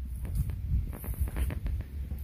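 Low, uneven thudding and rustling of a handheld camera being carried by someone walking across grass.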